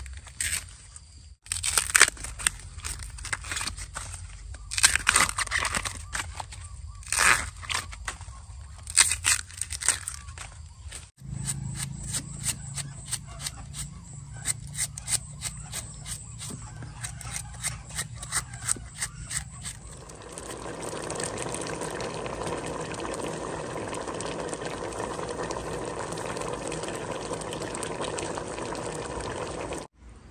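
Young bamboo shoots being snapped off and their husks torn, in a run of loud sharp cracks. After a sudden change about eleven seconds in come lighter crackles of shoots being peeled by hand, over a low hum. For the last third there is a steady, even hiss.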